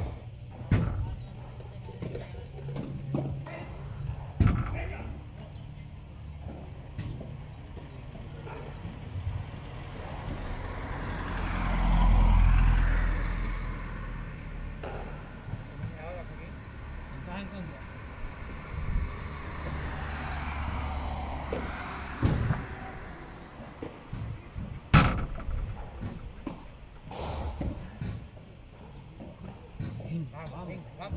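A passing heavy vehicle's engine swelling to its loudest about twelve seconds in, then fading over the next ten seconds, with scattered sharp knocks, the loudest about twenty-five seconds in.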